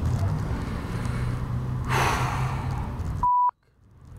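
A steady low hum of background ambience with a breathy sigh about halfway, then a short, loud single-pitch electronic beep near the end that cuts off into dead silence.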